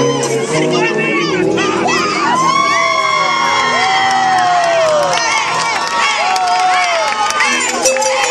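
An audience cheering, shouting and whooping over marinera dance music, with many voices calling out at once and a few long drawn-out whoops about halfway through.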